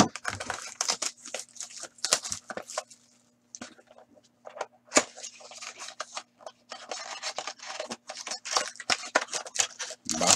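A cardboard trading-card hobby box being opened by hand: a run of scraping, rustling and tearing of cardboard and packaging. A sharp snap comes about five seconds in.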